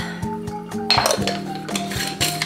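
Background music with a steady beat. About a second in, a small glass clinks sharply.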